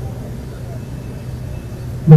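Steady low hum over faint, even background noise.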